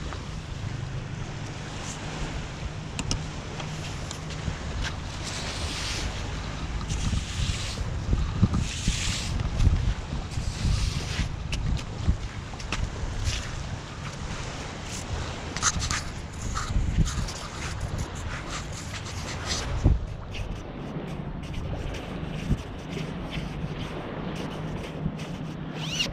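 Wind buffeting the microphone over the wash of surf, with scattered soft knocks and scrapes from walking and handling gear on wet sand.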